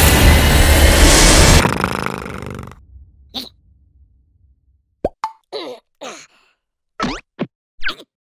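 Cartoon sound effects. A loud rushing noise with a thin rising whine cuts off about a second and a half in and dies away. After a quiet stretch there comes a run of short, squeaky blips that slide in pitch.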